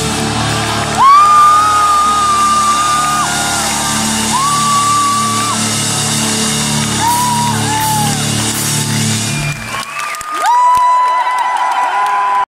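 A heavy metal band's closing chord ringing out while the audience cheers and whistles, with long piercing whistles, one very loud about a second in. The chord cuts off about ten seconds in, leaving the crowd whistling and cheering.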